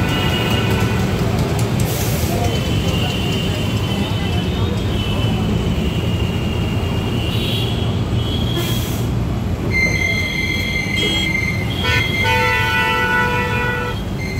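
City street traffic heard from inside a moving vehicle: a steady engine and road rumble, with high, drawn-out whining and horn-like notes coming and going. These notes are strongest over the last few seconds.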